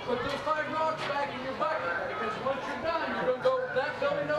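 Mostly speech: a group of children chattering together, with a man's voice among them.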